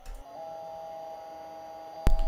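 Conner CP341i 40 MB IDE hard drive powering up: its whine rises in pitch over the first half-second, then holds as a steady high two-note tone with no seek noise, a sign that the drive is not starting up as it should.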